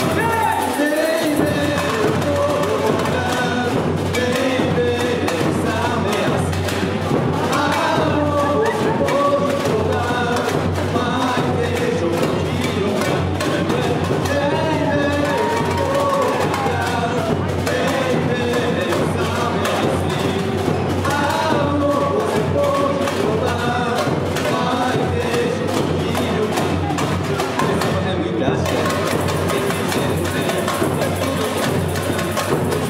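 Samba music with steady percussion and voices over it.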